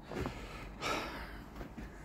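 A man's soft breathing: a short breath near the start and a longer breath out about a second in.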